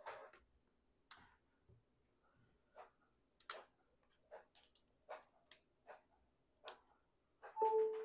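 Faint, sharp clicks and ticks, about one a second at uneven spacing. A brief high two-note whine comes just before the end.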